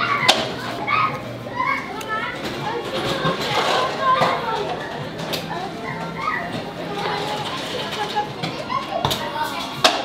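Indistinct background voices of children talking and playing, with a few sharp clicks scattered through.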